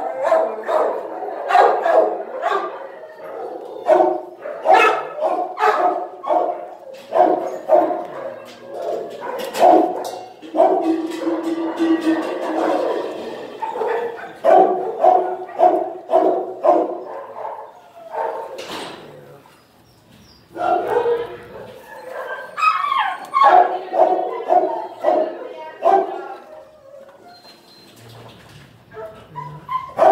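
Dogs in shelter kennels barking over and over in runs of quick barks, with brief lulls twice in the second half.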